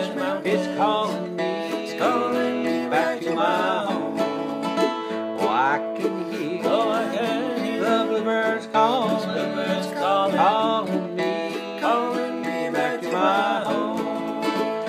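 Acoustic bluegrass played live by a small string band: a strummed acoustic guitar with other plucked strings and a sliding melody line, running steadily.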